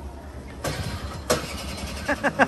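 A small single-seat microcar being started: two short loud bursts about two-thirds of a second apart over a steady low hum.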